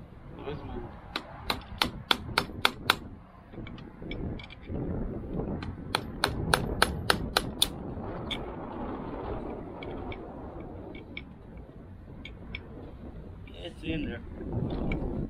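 A hammer striking a punch set against the edge of an old prop shaft seal, driving it out of a MerCruiser Bravo 3 bearing carrier: a quick run of about seven sharp metal taps, a pause, then a second run of about eight, followed by lighter scattered taps.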